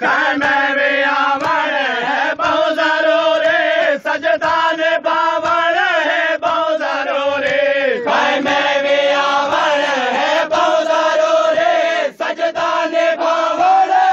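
Voices chanting the refrain of a Saraiki noha, a Shia lament, with regular sharp slaps of chest-beating (matam) about twice a second underneath.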